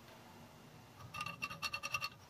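Quick run of small metallic clicks, about eight in a second and starting about halfway, as metal parts are handled on a motorcycle cylinder head's valve gear.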